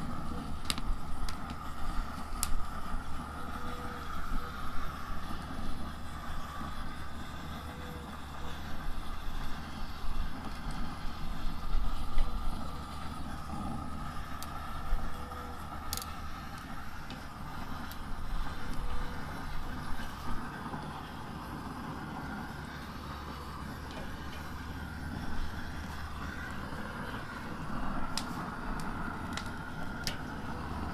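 Propane torch burning with a steady rushing flame as it chars chili peppers on a grill, with a few sharp clicks of metal tongs against the grate.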